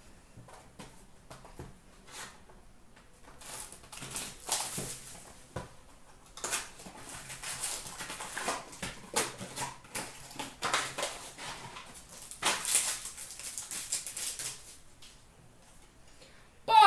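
Hockey card boxes and foil pack wrappers being handled and torn open, with crinkling and rustling in irregular bursts from a few seconds in, and the cards being shuffled.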